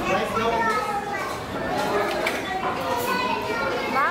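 Indistinct talking with high children's voices among the chatter of a crowded restaurant dining room, no words clear.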